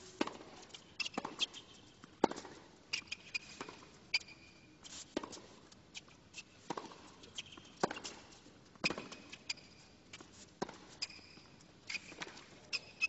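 A tennis rally on a hard court: the ball is struck by the rackets and bounces about once a second, with short high squeaks from the players' shoes.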